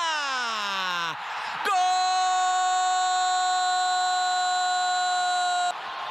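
Football commentator's drawn-out goal cry: a falling shout, then one long, steady, held note for about four seconds that cuts off abruptly near the end.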